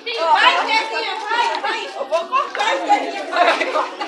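Several people talking at once, overlapping chatter of a small group.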